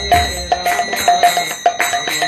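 Mridanga (khol) drum played by hand in a quick rhythm of about four or five strokes a second, mixing ringing treble-head strokes with deep bass-head strokes, with a bell-like metal ringing over it.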